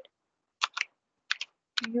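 Typing on a computer keyboard: about five separate keystrokes, coming in small pairs a half-second or so apart.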